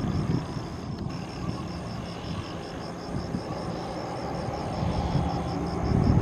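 Boeing 737-800's CFM56 jet engines heard from a distance as a steady rumble while the airliner rolls out on the runway after landing, growing a little louder near the end.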